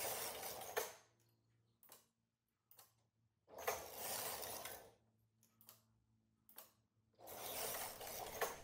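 Silver Reed knitting machine carriage pushed across the needle bed three times, each pass a rasping slide of about a second ending in a sharp click as it knits a row. A few faint clicks fall in the quiet gaps between passes.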